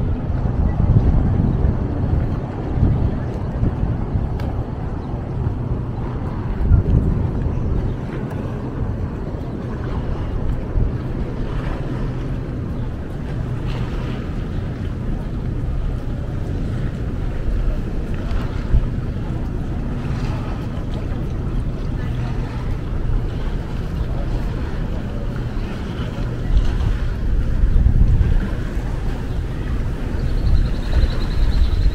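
Wind buffeting the microphone in gusts, heaviest in the first several seconds and again near the end, over a bed of outdoor ambience with faint voices of passersby.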